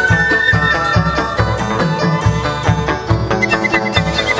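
Chầu văn ritual music in an instrumental passage between sung verses: a sustained lead melody over a steady low beat.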